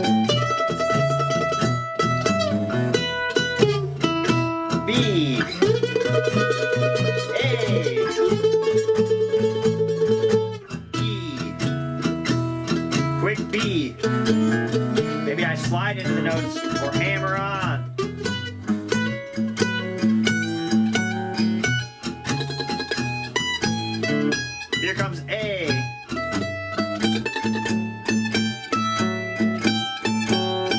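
Ellis F-style mandolin picking an improvised blues solo built on chord tones, over a backing track in E with a steady repeating bass part. There is a long held, rapidly picked note about five seconds in, and some notes slide in pitch.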